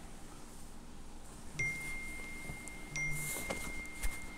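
A high, pure chime-like ringing tone sounds twice, about a second and a half apart, each ringing on for a couple of seconds. There is a short rustle near the end.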